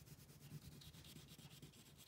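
Orange wax crayon rubbed across drawing paper in rapid back-and-forth shading strokes, a faint scratchy rasp.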